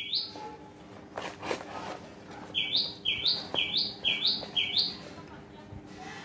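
A small bird chirping: a run of five short, high chirps, about two a second, starting a couple of seconds in.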